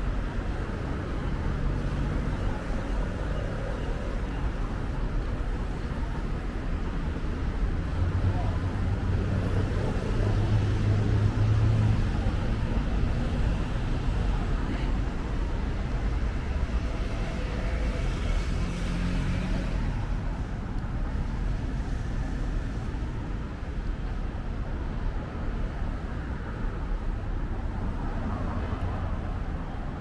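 City street traffic: a steady low rumble of cars on the road beside the sidewalk, swelling as a vehicle passes near the middle.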